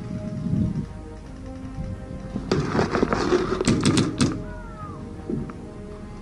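Background music, with a burst of paintball fire about two and a half seconds in: a rapid run of sharp cracks lasting under two seconds.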